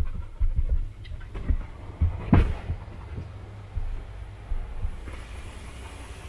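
A dog panting inside a car's cabin during an automatic car wash, over the wash's steady low rumble and irregular low thuds. A louder knock comes about two and a half seconds in, and a faint hiss of spraying water begins near the end.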